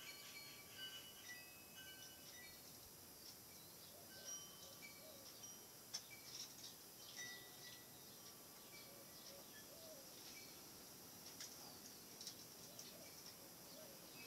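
Faint birdsong: scattered short, high chirps over a very quiet room, with a few soft clicks.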